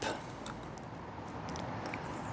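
Quiet steady background hiss with a few faint small clicks from plastic hose-fitting parts being handled.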